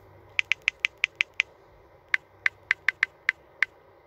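Typing clicks on a smartphone's on-screen keyboard: two quick runs of short, sharp clicks, about seven in the first second and a half and about seven more over the next second and a half.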